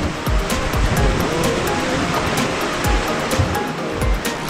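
Hozu River rapids rushing steadily around a wooden tour boat as the current turns rough, with background music laid over the water sound.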